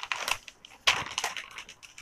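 A sheet of printed packing paper crinkling as it is pulled out of a folded silk saree and tossed aside. There are two bursts of crinkling, a short one at the start and a louder one about a second in.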